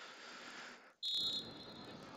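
A referee's pea whistle gives one short, shrill, trilling blast about a second in, over steady background noise. It is the restart of play after a goal.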